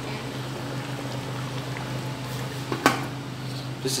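Steady low hum with a faint hiss behind it, broken by one short sharp sound about three seconds in.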